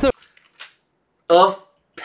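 Speech broken up by edits: a voice cuts off abruptly at the start, there is about a second of dead silence, then one short spoken word about a second and a half in.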